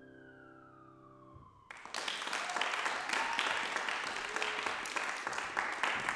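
The last piano chord dies away quietly, then an audience breaks into applause about two seconds in: dense, steady hand clapping.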